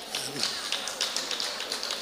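Scattered audience hand-clapping: many quick, irregular claps overlapping, in reaction to a joke.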